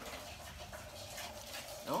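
Green-cheeked conure bathing in a shallow plate of water, with a steady splashing patter. A short, loud, steeply falling voice-like sound begins at the very end.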